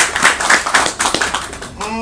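Audience clapping in a small room: many irregular hand claps. Near the end a man gives a short "mmm".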